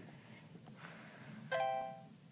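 Vlingo voice-assistant app's electronic chime from the Android phone's speaker, sounding once about one and a half seconds in, a short bright chord of several tones that fades in about half a second. It signals that the app has finished processing the spoken command and is returning its result, here a fallback to a web search.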